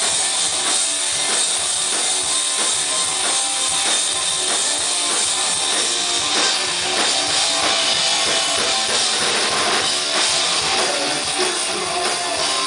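Live rock band playing with drum kit and guitars, dense and steady with a regular drum beat, heard from among the audience at a club show.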